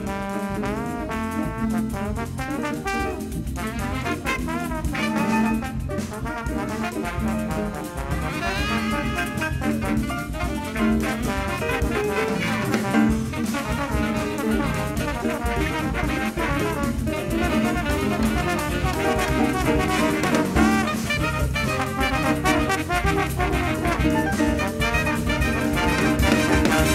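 Big band playing a samba-jazz arrangement live: trumpets, trombones and saxophones in full section writing over drum kit and rhythm section.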